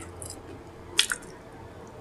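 Close-miked wet mouth sounds of someone chewing, with one sharp smack of the lips about a second in.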